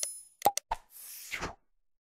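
End-screen animation sound effects: a short high chime rings out and fades at the start, a quick double mouse-click about half a second in, then a whoosh that stops about a second and a half in.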